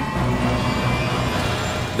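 Airliner jet engines running up to high thrust as the throttles are pushed forward for a go-around: a steady noise with thin whining tones. Background music plays underneath.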